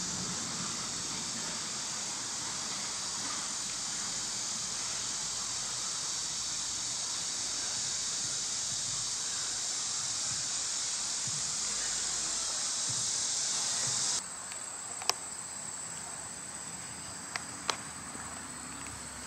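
A steady, high-pitched chorus of insects. It cuts off suddenly about fourteen seconds in, leaving a thinner, higher buzz and a few sharp clicks.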